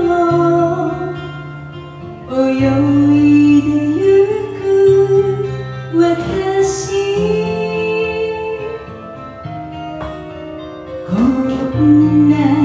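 A woman singing a Japanese pop song into a handheld microphone over a karaoke backing track, in long held notes with short breaths between phrases.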